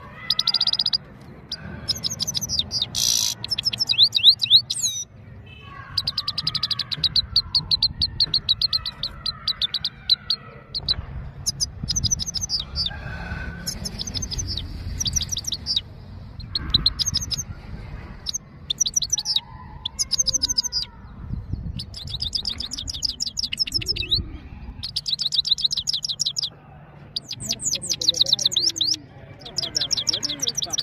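Himalayan goldfinch singing: twittering phrases of rapid high notes, each a second or two long, broken by short pauses, over a low rumble.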